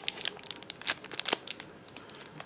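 Clear plastic packaging of a makeup brush crinkling and clicking as it is handled, in a string of irregular small crackles.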